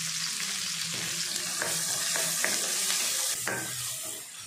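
Chopped shallots and curry leaves sizzling in hot oil in a stainless-steel kadai, a steady hiss with a few sharp clicks. Near the end they are stirred with a wooden spatula.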